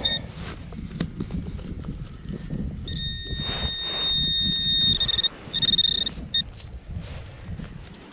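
Handheld metal-detecting pinpointer probe sounding over a buried metal target. There is a short high beep near the start, then a steady high-pitched tone from about three seconds in that breaks into quick pulses for about a second. Low rustling and scraping of soil being dug by hand runs underneath.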